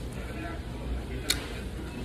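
Someone chewing a mouthful of crispy fried chicken, with one sharp click a little past halfway, over a low steady room hum.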